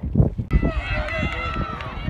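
Players shouting and calling to each other on the pitch during open play, over a low rumble of wind on the microphone. The sound changes abruptly about half a second in, where the footage is cut.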